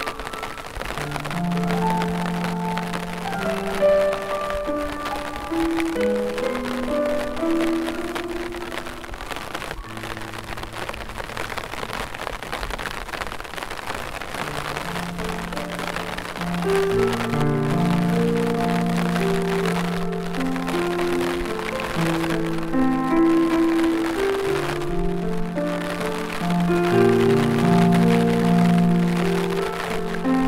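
Slow, gentle piano music over a steady patter of rain. The piano thins out for a few seconds in the middle, then returns with fuller chords.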